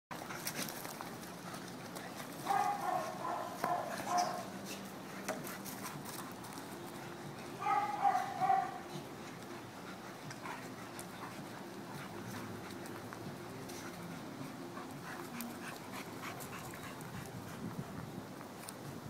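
Dogs play-fighting, with two high-pitched dog vocal outbursts, each about a second long and several seconds apart.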